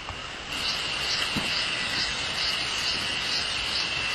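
Forest insects buzzing: a steady high drone with a pulse about twice a second, starting suddenly about half a second in.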